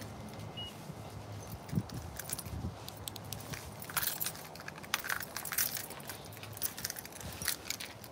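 Handling noise of a phone carried while walking: scattered light clicks and rustles over a faint low hum.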